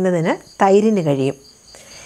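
A woman speaking Malayalam for about the first second, then pausing, over a steady, high-pitched chirring of crickets that runs on without a break.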